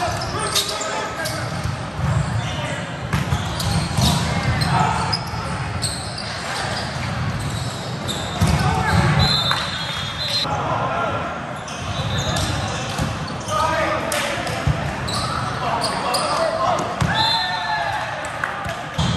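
Volleyball being played in a large, echoing gym: the ball smacking off hands and forearms in sharp hits, amid players' shouted calls and the voices of many people from surrounding courts.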